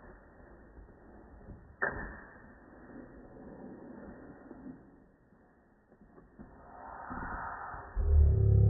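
Faint handling of a cardboard cosmetics box: a sharp tap or click about two seconds in, then soft rubbing and shuffling, swelling into a louder rustle near the end.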